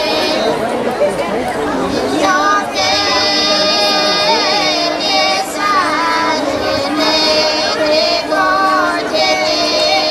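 Pomak women's folk choir singing a cappella in polyphonic style: one part holds a steady drone while the other voices carry a bending melody above it.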